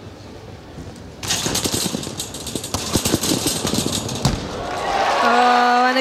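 A rapid run of thuds and knocks from a gymnast's sprinting run-up and take-off and landing on a double mini-trampoline. It starts about a second in and ends shortly before the last second, when a single voice-like tone is held.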